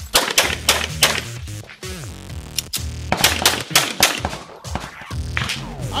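Handgun fired in fast strings of shots, mostly in quick pairs with short pauses between strings, during a USPSA Limited stage; the shooting stops shortly before the end.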